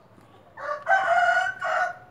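Rooster crowing once: a single crow of about a second and a half in three joined parts, starting about half a second in.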